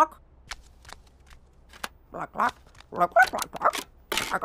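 Scattered soft clicks and taps, then a cartoon character's wordless vocalizing in two short bursts of babble, about two and three seconds in.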